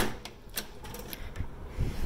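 Handling noise of a phone being carried and turned while walking: a few soft scattered clicks and taps over a low rumble of wind on the microphone, the rumble swelling briefly near the end.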